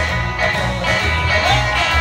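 Live rockabilly band playing: upright bass, electric and acoustic guitars and a snare drum, with the bass notes moving steadily underneath.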